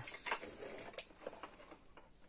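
Faint handling noise of a plastic MN168 RC crawler chassis being lifted and turned in the hands: light scattered clicks and rattles of its plastic links and parts, with one sharper click about a second in.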